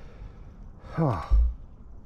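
A person's voiced sigh about a second in, its pitch falling, followed by a brief low thump.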